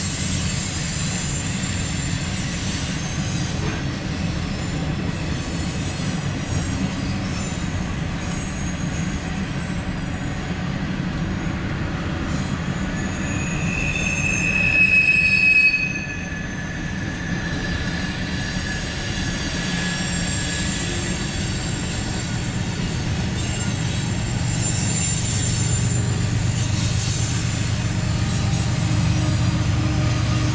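CSX mixed freight train rolling past, its cars giving a steady rumble with thin, high wheel squeals. About halfway through a louder high squeal builds for a couple of seconds, then cuts off suddenly.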